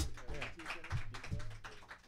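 Light, scattered applause from a small audience, many separate claps, with a few low thuds and a faint voice underneath.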